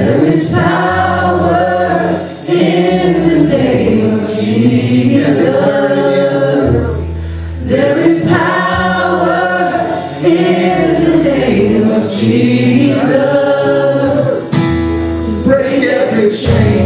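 Live worship band playing a gospel-style song: male and female voices singing together over an acoustic guitar and a bass guitar line that changes note every second or two.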